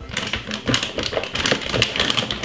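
Quick, irregular light clicks and taps as dry all-purpose seasoning is shaken from its container onto raw chicken in a glass bowl.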